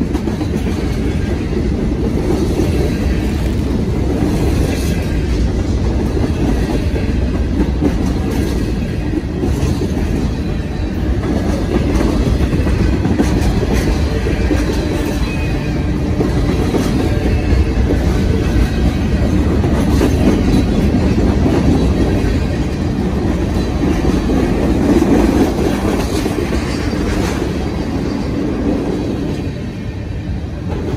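Freight train cars rolling past: a steady rumble of steel wheels on the rails, with repeated clicks and clacks from the trucks passing over the track.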